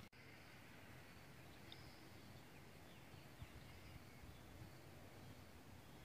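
Near silence: faint steady background noise.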